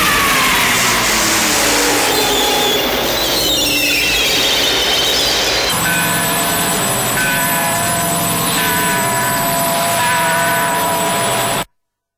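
Early-1970s psychedelic electronic sound collage. Squealing tones glide up and down at first, then give way at about six seconds to a held chord of steady electronic tones with a higher tone pulsing on and off about once a second. The sound cuts off suddenly just before the end.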